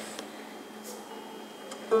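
Quiet stage room tone with a steady low hum and a few faint clicks. Near the end, a plucked string instrument sounds its first notes.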